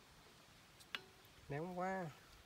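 One sharp click from hands handling parts on a small electric water pump, which is not running, followed near the end by a short sound from a man's voice.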